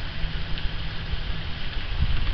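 Steady outdoor background noise: an even hiss with an uneven low rumble underneath.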